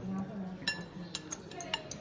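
Chopsticks being put down and picked up among porcelain tableware: one ringing clink a little under a second in, then four or five quicker, lighter clicks.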